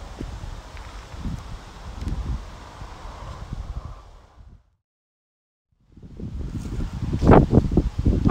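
Outdoor wind noise on the microphone with rustling, fading out to complete silence about halfway through, then fading back in near the end.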